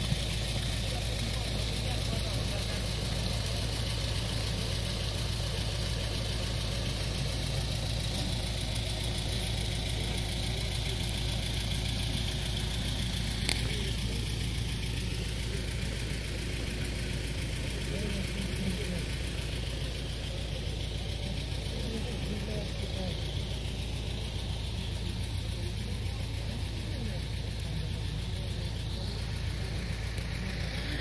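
An engine running steadily at idle, with one sharp click about halfway through.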